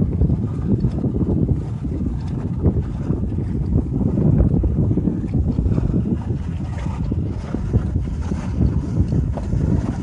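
Gusty wind of about 15 to 20 mph buffeting the microphone: a low, uneven rumble that swells and fades.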